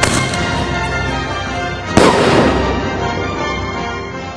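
Single-shot aerial firework tube firing its shell with a sudden report, then the shell bursting about two seconds later, the loudest moment, into a green star shower. Background music plays throughout.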